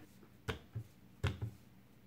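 Hands tapping down onto the plastic touch pads of a Speed Stacks cube timer: four short, light taps in two pairs, the second pair about three-quarters of a second after the first.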